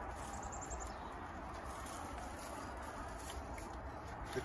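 Outdoor background with a low steady rumble, and about a quarter second in, a brief faint high-pitched trill of quick chirps from a small bird at the feeders.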